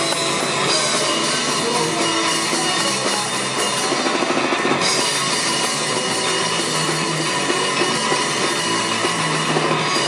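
Punk rock band playing live: electric guitar, bass guitar and drum kit, loud and steady with no singing.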